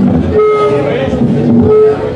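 Loud amplified electric guitar holding steady distorted notes through the PA, with a low rumble under them, cutting off abruptly at the end.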